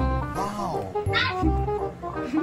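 Background music with held notes over a pulsing bass line, and a short high-pitched burst about a second in.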